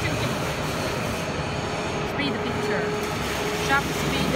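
Steady machinery background noise, with brief snatches of voices about two seconds in and near the end.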